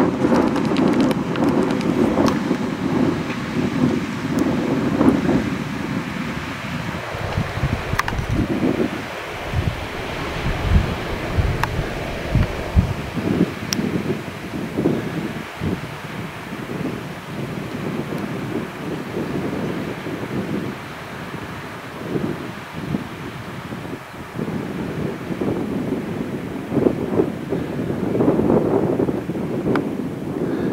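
Gusty storm wind blowing across the microphone, with heavy low buffeting from about nine to fourteen seconds in.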